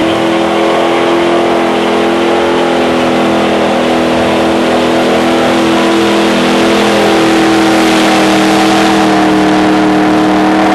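Datsun 200B engine held at high, near-steady revs through a burnout, the rear tyres spinning on the spot, growing slightly louder about seven seconds in.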